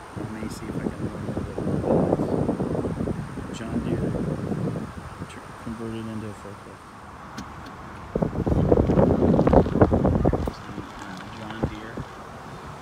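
Indistinct voices, with wind on the microphone.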